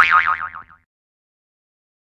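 Cartoon 'boing' sound effect: a springy tone with a quickly wobbling pitch that starts sharply and fades out in under a second.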